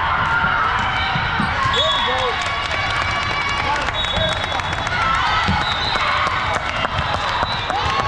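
Busy multi-court sports hall during volleyball play: many echoing voices, sneakers squeaking on the hardwood floor, and scattered thuds of balls. A high whistle sounds briefly twice, about two seconds in and again about four seconds in.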